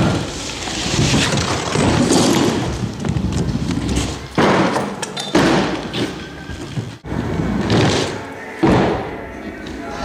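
Stunt scooter wheels rolling on a wooden floor and ramps, with several sudden thuds of the scooter deck and wheels hitting the wood, and voices in the background.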